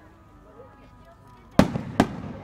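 Aerial firework shells bursting: two sharp bangs close together near the end, each trailing off into a rumbling echo. Low crowd chatter comes before them.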